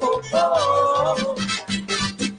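A chorus of carnival performers singing a long held phrase live over the stage sound system, with drums and accompaniment keeping a steady beat that grows more prominent in the second half.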